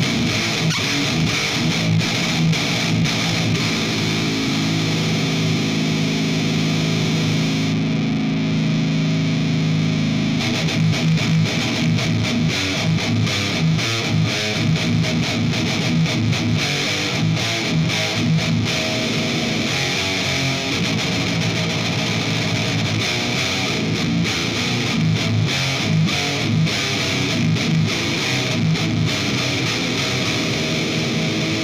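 Electric guitar played through a This Heavy Earth Bad Trip, a RAT-style distortion pedal, giving thick, heavily saturated tone. A long chord rings from about four to ten seconds in, then tight, fast chugging riffs follow.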